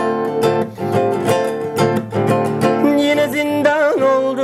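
Nylon-string classical guitar with a capo, strummed in the accompaniment of a Turkish folk song (türkü); a man's singing voice comes in near the end.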